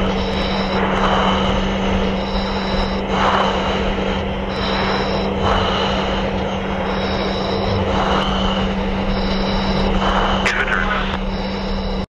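Steady aircraft engine and cabin noise with a constant low hum, and a high tone pulsing about every two seconds. A brief rising whistle comes near the end.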